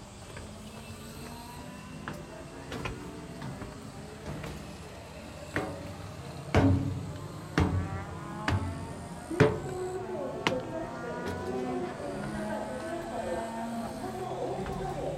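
Camera handling: about six sharp knocks and bumps roughly a second apart in the middle, with people's voices talking in the background in the second half.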